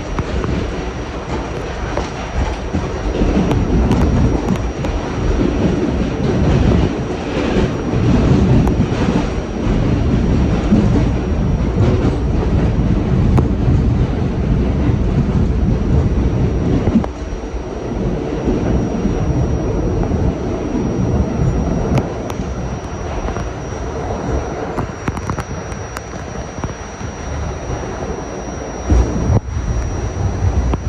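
R68/R68A New York subway train running through a tunnel, heard from the front of the car: a continuous rumble of wheels on rail with clattering. The noise drops a step a little over halfway through.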